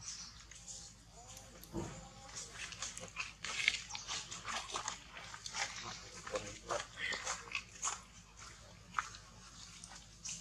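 Irregular crackling and clicking as a long-tailed macaque mother and infant shift on dry leaf litter, busiest in the middle, with a faint short squeak near two seconds in and one sharp click near the end.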